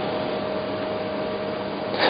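Steady room noise: an even hiss with a faint, constant hum.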